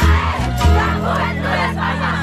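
A large crowd shouting and cheering over loud music. The music has a pulsing bass that settles into long held bass notes under a second in.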